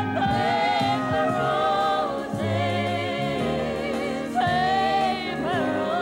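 A woman singing live into a hand microphone, holding long notes with vibrato over band accompaniment.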